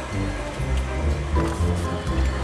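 Background music with a strong bass line and held notes that change every fraction of a second.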